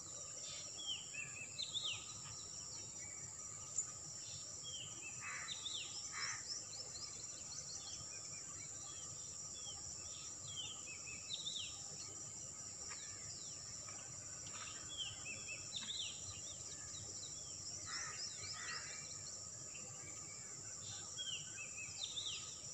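Outdoor evening ambience: a steady high-pitched insect drone, with birds giving clusters of short, downward-sweeping chirps again and again.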